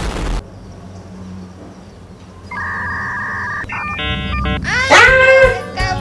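Edited-in sound effects: a loud explosion that cuts off just after the start, then a steady two-tone electronic beep, a quick run of stepped electronic blips, and near the end a high, wavering whine.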